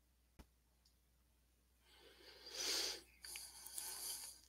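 A single click, then a person's breath, puffing noisily into a close headset microphone about two seconds in, followed by a second breath near the end.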